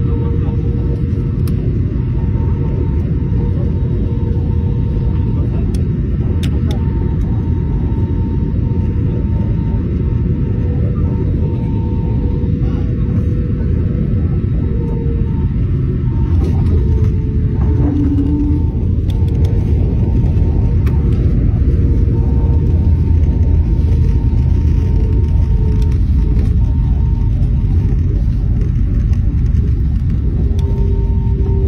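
Jet airliner cabin noise heard from a window seat over the wing during landing and rollout: a steady low rumble of engines and airflow, with two steady engine tones running through it, growing somewhat louder about halfway through once the plane is on the runway.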